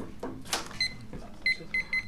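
An electronic timer beeping: a short series of high, clean beeps starting about a second in, coming closer together near the end, after a single knock about half a second in.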